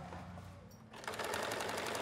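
Electric sewing machine stitching fabric, starting about a second in, with a rapid, even rattle of needle strokes.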